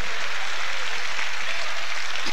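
A congregation applauding, a steady even clapping with no voice over it.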